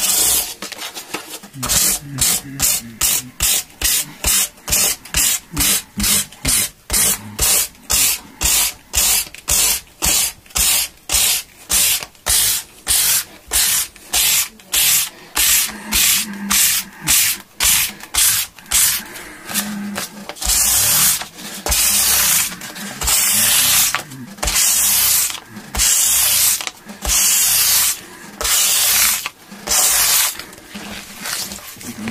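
Hand sanding along the edge of a maple guitar fingerboard and its fret ends with fine-grit sandpaper, in quick back-and-forth strokes about two a second, changing to longer, slower strokes about a second apart from about twenty seconds in.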